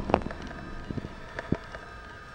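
A few short knocks and clicks from a handheld camera being moved and handled, the sharpest just after the start and weaker ones about one and one and a half seconds in.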